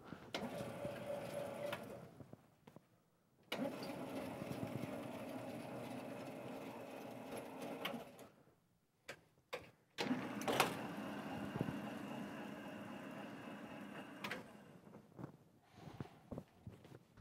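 Chalk writing on a blackboard: scratching with occasional taps, in three stretches of a few seconds each with short pauses between.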